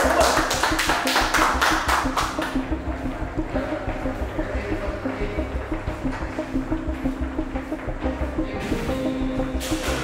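Background music with a steady pulsing beat. In the first couple of seconds a quick run of sharp hits sits over it, then stops.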